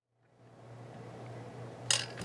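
Faint room tone with a low, steady electrical hum, fading in from silence, and one sharp click near the end.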